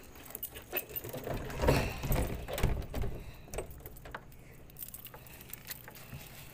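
Irregular rattling, clinks and knocks of handheld fishing gear being moved about, busiest around two seconds in.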